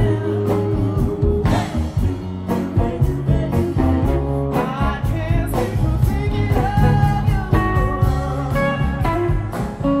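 Live blues band playing, with three women singing together over guitar, bass and drums.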